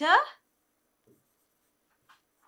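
A woman's spoken word trailing off, then near silence with one faint soft tap about a second in, from a pen on an interactive whiteboard.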